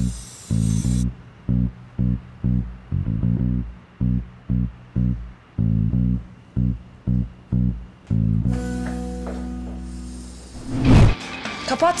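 Dramatic background music: a run of short, low bass notes in a quick rhythmic pattern. About eight seconds in it gives way to a held chord, which builds to a loud low swell near the end.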